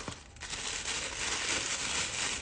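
Pink tissue paper crinkling and rustling as hands unwrap it, starting about half a second in and growing a little louder.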